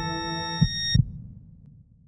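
Soundtrack score: a sustained synthesizer chord over a heartbeat-like sound effect, low thumps in lub-dub pairs. About a second in, the chord and heartbeat cut off together, leaving a low rumble that fades to near silence.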